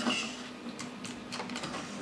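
Battery-powered walking toy robot running: its small 120:1 right-angle gearmotor gives a steady faint whir while the plastic legs and gears make irregular light clicks on the tabletop.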